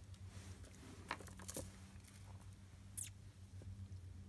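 Faint clicks and light rustles of beaded jewelry dangles, with metal clasps and glass and stone beads, being picked up and set down on a cloth. A low steady hum runs underneath.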